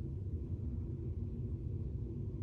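Steady low rumble of a cruise ship under way at sea, heard inside a stateroom bathroom, with a faint, even hum in it.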